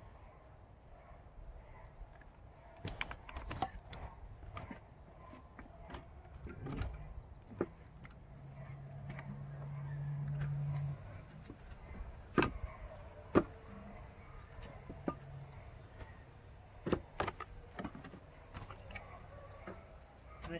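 Scattered wooden knocks and clatter as split firewood and wooden pallets are handled and set down. A steady low hum swells for a few seconds around the middle and cuts off suddenly.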